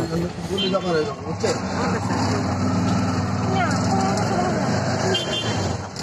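Auto-rickshaw engine running steadily as it drives, heard from inside the grille-sided cab, with voices over it.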